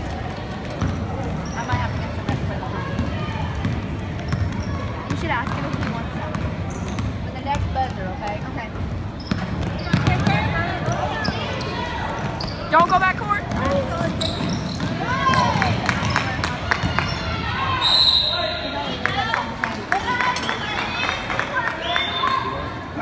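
Gym sounds during a youth basketball game: spectators' voices and shouts over a basketball bouncing on the hardwood floor. A short referee's whistle blast comes near the end, before play stops for a free throw.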